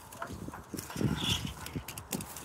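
Light, irregular knocks and scrapes of a die-cast Hot Wheels toy car pressed and run by hand along a weathered wooden board and window frame.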